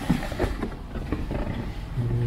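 Handling noise from a cardboard box being lifted and held up against the camera: a low rumble with a few faint knocks.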